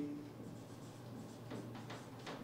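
Marker pen writing on a whiteboard: faint short strokes, with a quick cluster of them in the second half.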